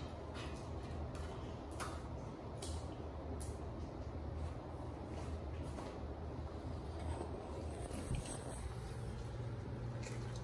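A steady low hum, with scattered light clicks of a dog's claws on a tile floor as it walks.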